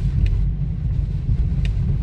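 Steady low rumble of a car driving, heard from inside the cabin as it rolls over broken, potholed asphalt, with a faint click about a second and a half in.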